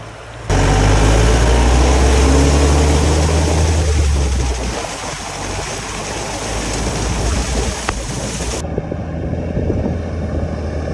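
Diesel Mahindra jeep driving through a shallow stream crossing: water splashing and rushing against the vehicle, heard close up over a strong low engine drone. The loud close-up sound starts suddenly about half a second in; near the end it gives way to a quieter, more distant engine sound.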